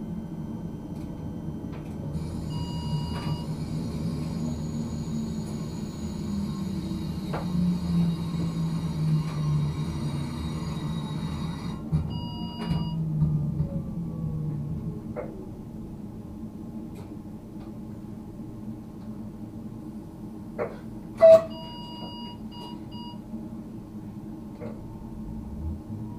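Cab of a Škoda RegioPanter electric multiple unit braking almost to a stop: a low drive hum that sags in pitch as it slows, a falling whine about halfway through, and short electronic beeps from the cab a few times. A sharp click a little past three-quarters of the way through is the loudest sound.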